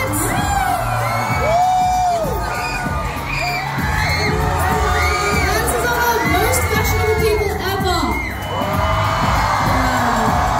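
Concert crowd cheering and screaming, many high voices shouting and whooping at once, with music playing underneath.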